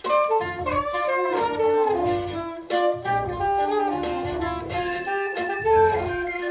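Alto saxophone playing a melody of short and held notes over a backing track with a steady beat.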